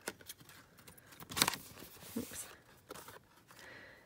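Scissors snipping loose threads and trimming paper, with paper being handled: a few short, scattered snips and rustles, the loudest about a second and a half in.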